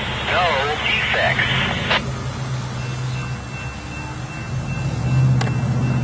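Diesel locomotive approaching at the head of a freight train, its engine a low steady drone that grows louder near the end. For the first two seconds a voice with rising and falling pitch is heard over it, cut off by a sharp click.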